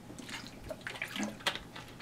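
Faint gulps and water sloshing as a person drinks from a plastic water bottle, with several light clicks from the bottle.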